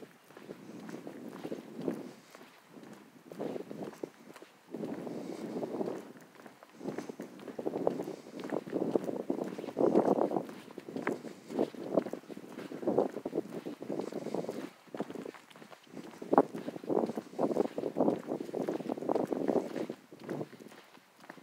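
A person's footsteps walking on a paved asphalt trail, coming in uneven, irregular bursts of noise with a few sharper clicks.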